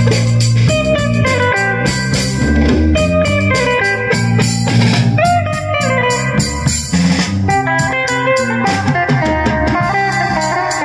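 Live band playing an instrumental passage: an electric guitar carries the melody, with a few bent notes, over a drum kit beat and a low bass line.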